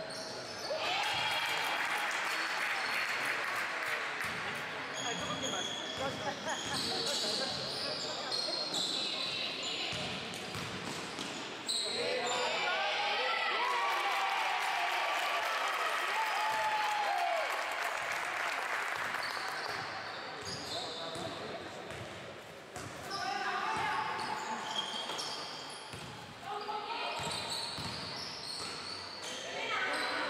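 Basketball game on an indoor court: the ball bouncing on the floor, sneakers squeaking in short high chirps, and players calling out, echoing in the large hall.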